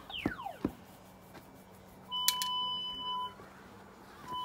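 A handheld cable locator (cable avoidance tool) giving a steady high beep of a little over a second, about two seconds in, with two sharp clicks as it starts. A short falling whistle-like sweep in pitch comes near the start.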